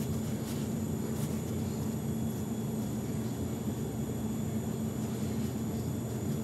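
Steady low hum of room background noise with a faint held tone and no distinct events.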